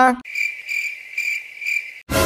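Cricket chirping sound effect: four high, evenly pulsed chirps about half a second apart. It is the stock comedy cue for an awkward silence.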